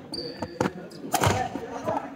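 Badminton rally on a sports-hall court: sharp racket strikes on the shuttlecock and footfalls, with a brief high shoe squeak on the floor near the start, all ringing in the hall.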